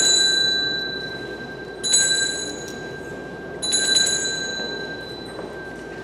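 Small metal bells jingling three times, about two seconds apart, each jingle leaving a clear ringing tone that fades slowly.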